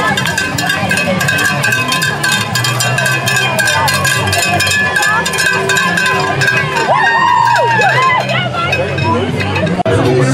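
Cowbell shaken rapidly and steadily, stopping about a second before the end, over the voices of a crowd of onlookers, with a few calls or cheers near the end.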